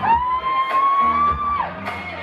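Live pop-rock band playing, with electric guitars, bass and drums, under one long high held vocal note that drops away about one and a half seconds in, and crowd noise behind it.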